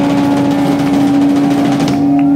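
Live rock band playing loudly, a distorted electric guitar holding one long sustained note over a dense wash of band sound.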